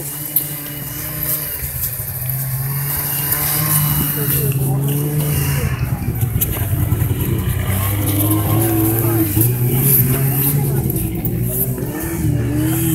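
A steady low drone that steps up and down in pitch, under a constant windy hiss, with a few sharp clicks and faint voices.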